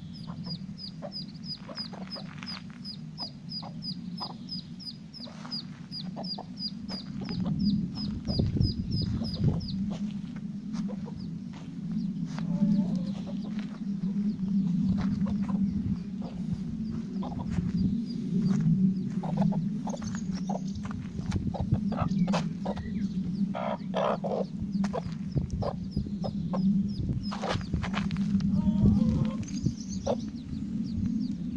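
Domestic hens clucking low and continuously to ducklings they have adopted. For the first ten seconds or so a duckling peeps rapidly and high, about three peeps a second.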